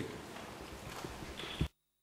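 Hiss of an open courtroom microphone channel with faint small ticks, ending in a short thump about one and a half seconds in, after which the sound cuts out to dead silence.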